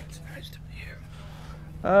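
Quiet room tone: a steady low hum with faint, indistinct voice sounds. A man starts speaking loudly near the end.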